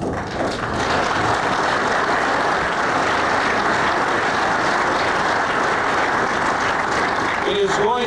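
Audience applauding: a steady burst of clapping lasting several seconds, tailing off near the end as speech resumes.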